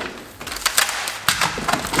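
Aluminium LED-panel mounting-frame rails clinking and knocking against each other and the workbench as they are unpacked and laid down: a quick series of light metallic clatters starting about half a second in.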